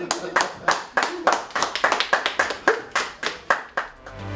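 A small group of people clapping by hand, a steady run of about three to four claps a second, with voices underneath.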